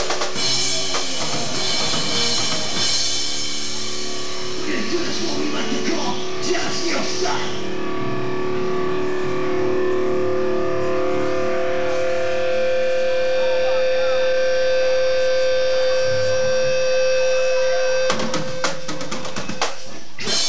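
Live rock band playing: drum kit and electric guitars. Dense playing at first gives way to long held guitar notes through the middle, and the drums come back in with sharp hits near the end.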